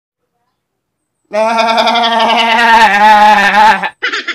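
A man's voice in one long, quavering laugh at a steady pitch, starting just over a second in and lasting about two and a half seconds.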